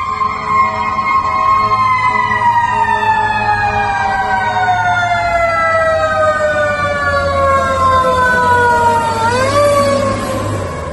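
Fire truck siren wailing: the tone holds, then falls slowly in pitch for about seven seconds before rising again briefly near the end, over a low engine rumble.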